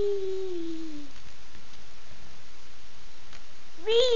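A toddler's long drawn-out vocal sound, high and falling in pitch, fading out about a second in; another starts just at the end.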